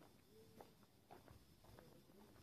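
Near silence: faint outdoor room tone with a few soft, scattered clicks.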